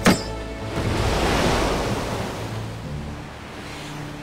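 Film soundtrack: a sharp crack as a sword cuts the ship's line, then a rushing surge of sea water that swells and fades as the ship races over the waves.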